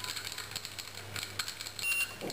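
A small electric pump motor hums steadily at a low pitch, with faint clicks of handling. Near the end a short, high-pitched beep from the control unit's buzzer sounds: the alert given when the motor's RFID tag is read or a control button is pressed.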